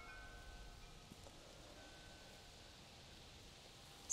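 Near silence, with a few faint, thin ringing notes of wind chimes, one near the start and another about two seconds in.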